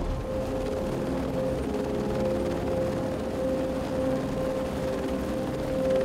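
Helicopter hovering: steady rotor and engine noise with a constant hum.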